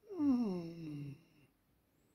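A wordless voiced 'mm'-like sound, falling in pitch over about a second, then quiet.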